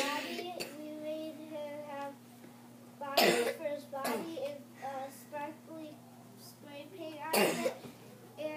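Three coughs, one right at the start, one about three seconds in and one near the end, with a child talking softly between them. A steady low hum runs underneath.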